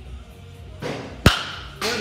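A baseball bat hitting a pitched ball once, a single sharp crack a little after halfway through.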